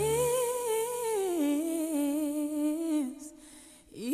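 A woman's solo pop vocal from a recorded song, holding one long sung note with vibrato, with no backing under it. The pitch steps down about a second in, and the note stops about three seconds in.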